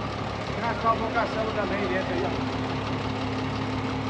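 Dump truck's diesel engine idling steadily with its tipper bed raised, unloading soil. Faint voices can be heard in the first half.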